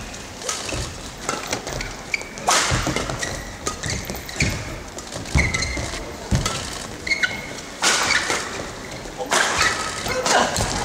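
Badminton doubles rally: a fast run of racket strikes on the shuttlecock, with short shoe squeaks on the court floor between shots and crowd noise behind.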